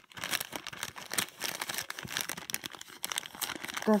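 Thin plastic zip-lock bag crinkling as a hand squeezes and turns it, an irregular run of crackles.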